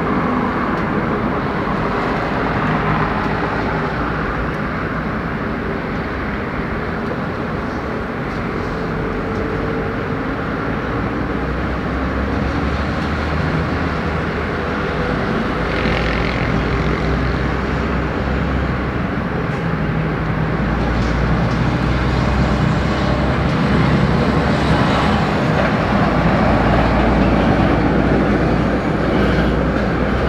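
Airbus A380's four jet engines running at taxi power, heard from a distance as a steady roar with a low rumble that grows louder in the second half.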